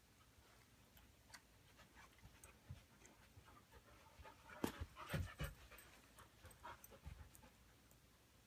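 Dogs panting quietly, with soft clicks and a short cluster of bumps and scuffles about halfway through as they move against each other.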